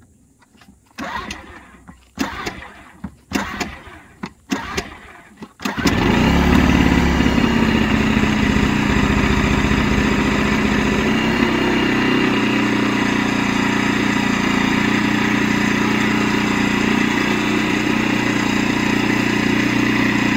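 Einhell TC-IG 2000 four-stroke inverter generator being pull-started on choke: about five recoil-cord pulls, roughly one a second, each turning the engine over. On about the fifth pull the engine catches, then runs steadily, settling a little after a few seconds. It is the hard-starting behaviour this generator is known for.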